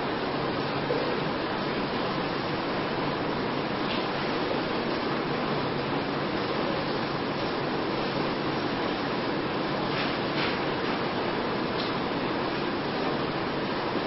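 Steady hissing room noise with a faint low hum and a few faint clicks, and no speech.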